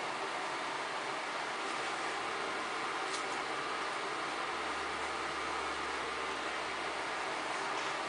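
Steady room hiss with no distinct event, and a faint low hum joining about halfway through.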